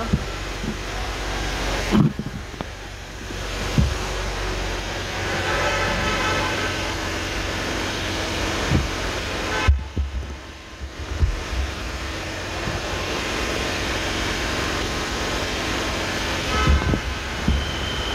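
Steady outdoor background noise with a low rumble of road traffic, broken by a few sharp knocks, the loudest about two seconds in and again about ten seconds in.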